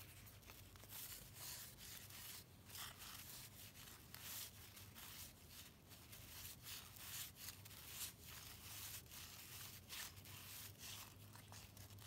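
Faint rustling of cardboard trading cards being slid off a stack one after another by hand: an irregular run of short, dry swishes of card rubbing on card, over a faint low hum.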